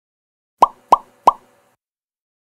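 Three short pop sound effects about a third of a second apart, each a quick downward-sliding blip, added in editing to mark on-screen text appearing.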